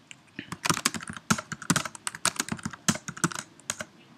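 Typing on a computer keyboard: irregular runs of quick keystrokes with short pauses, entering short terminal commands.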